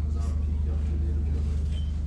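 A steady low hum, with faint voices in the room during the first second.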